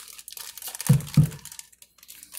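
Clear plastic zip-top bag crinkling as it is handled with bottles inside, with two dull thumps about a second in.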